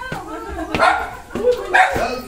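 A dog barking, with people's voices around it.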